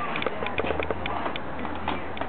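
Handling noise: a run of light, irregular clicks and knocks over a low steady hum, as a power cord and plug are handled at a wall outlet.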